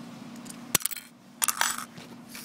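Handling noise: a sharp click about three-quarters of a second in, then a quick run of light clinks and rattles.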